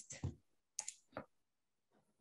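Two light clicks about half a second apart, from painting supplies being handled on a tabletop.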